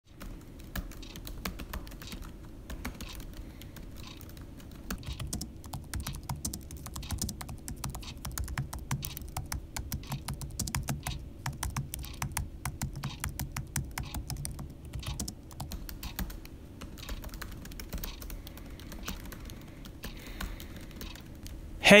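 Typing on a MacBook laptop keyboard: quick, irregular key clicks in runs, over a low steady hum.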